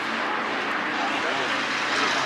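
Open-air noise of a soccer game: a steady low engine drone under a noisy haze, with distant voices from the field.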